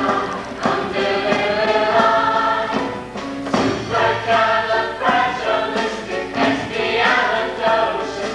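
Mixed show choir of male and female voices singing together in harmony, with sustained sung notes.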